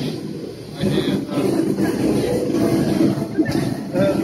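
Indistinct voices of people talking in the background, too mixed to make out words, with a brief lull about half a second in.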